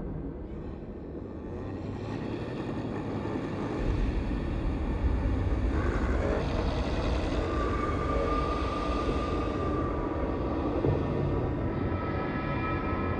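Live dark industrial drone music: a dense, noisy wash over which a deep low rumble swells in about four seconds in. A steady high tone is held through the middle.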